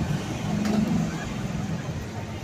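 Road traffic: a red double-decker London bus and a black taxi moving past close by, their engines running, loudest about a second in.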